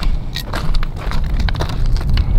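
Footsteps crunching over dry, gravelly ground and brushing through dry desert scrub: a run of short, irregular crunches and crackles over a steady low rumble of wind on the microphone.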